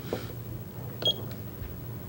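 Quiet room tone with a low hum, broken about a second in by a brief, faint, high electronic beep.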